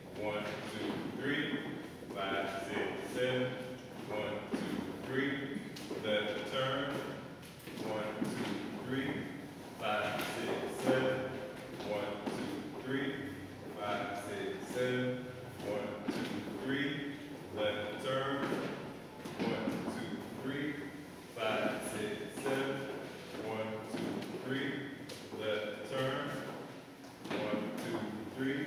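A man's voice talking throughout, with thuds of dance steps on a wooden floor.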